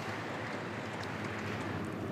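Steady low hiss of room tone, with no distinct sound event.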